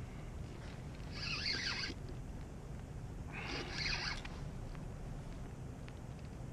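Spinning reel's drag buzzing in two short runs, about a second in and again about halfway through, as a hooked striped bass pulls line. A low steady wash of wind and water runs underneath.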